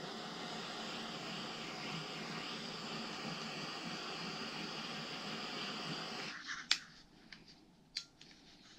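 Handheld gas torch burning with a steady hiss as its flame scorches bare wood, then shut off suddenly about six seconds in, followed by a few sharp clicks.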